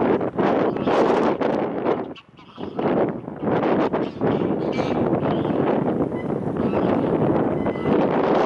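Strong wind buffeting the microphone in loud, irregular gusts, with a brief lull about two seconds in.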